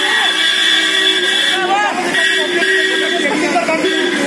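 A vehicle horn held in two long, steady blasts, the first running to about a second and a half in, the second starting about half a second later and lasting to near the end. Under it, a crowd is shouting.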